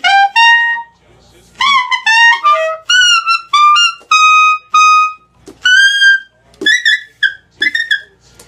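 Saxophone playing short, very high notes in the altissimo range above the normal register, some slurred with small bends, in short phrases with brief pauses between them.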